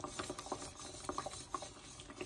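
Wire balloon whisk stirring a thick cream sauce in an enamelled pot: faint rubbing with scattered light ticks of the wires against the pot.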